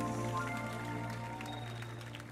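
Live band music: several notes held together, a few new ones coming in about half a second in, the whole steadily fading away.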